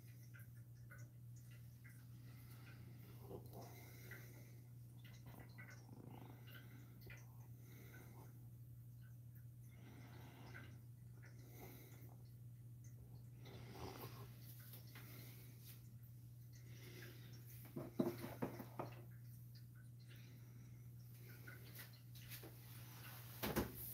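Running distillation apparatus, very quiet: a steady low hum with faint, scattered ticks and a short cluster of louder clicks near the end.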